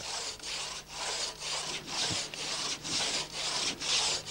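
Large crosscut saw rasping back and forth through a jarrah trunk in the felling cut, in even strokes about two to three a second.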